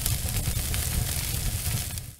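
Title-card sound effect of steady hissing and crackling over a low rumble, like sizzling on a grill.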